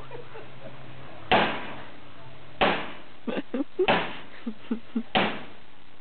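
Four heavy knocks, evenly spaced about a second and a quarter apart, each ringing off briefly, with short voice sounds between them.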